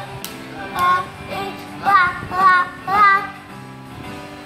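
A young child singing a colours song over backing music: a few short sung notes that swoop up and down, the loudest about two and three seconds in.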